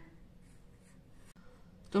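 Red felt-tip marker drawing on paper, a few faint, soft strokes.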